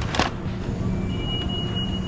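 A plastic-wrapped tray of chicken being handled over a shopping trolley: a brief plastic crackle just after the start over a steady low hum. A thin, steady high tone comes in about a second in.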